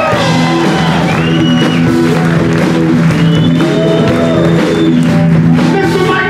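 Electric blues-rock band playing live and loud: electric guitar holding long notes that bend up and down, over steady held chords, bass and drums.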